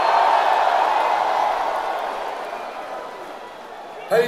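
Large concert crowd cheering and yelling between songs, the noise fading steadily over a few seconds.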